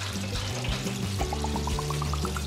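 Water running from a tap into a sink, over background music that plays a quick rising run of short notes in the second half.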